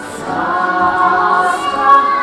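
Several voices singing a long held chord that grows louder.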